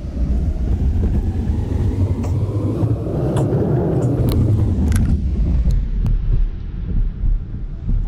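Tyre and road rumble inside a Tesla electric car's cabin as it drives over a rough, snow-covered road, with a few sharp knocks about halfway through as the wheels hit potholes.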